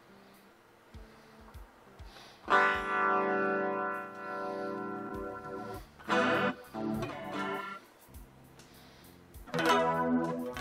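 Electric guitar played through the TASCAM DP-24/32's virtual amp with its flanger effect on: after a few faint ticks, a chord is strummed about two and a half seconds in and left to ring for about three seconds, then a few short chords follow, and another chord starts near the end.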